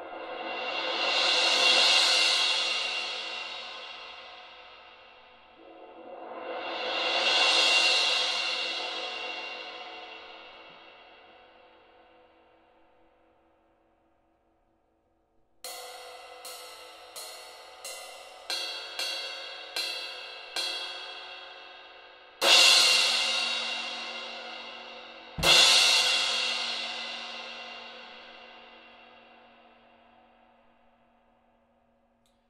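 Saluda Glory cymbal played with soft mallets: two rolls that swell up and die away. Then come about eight separate stick strokes, roughly one every two-thirds of a second, and two full crash hits that ring out, the second with a low bass-drum thump under it.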